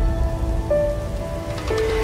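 News channel intro jingle: a few held synthesizer notes, changing pitch about a second in, over a low, dense rumbling noise.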